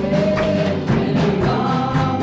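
Live gospel worship music: several voices singing together over drums, electric guitars and keyboard, with a steady beat.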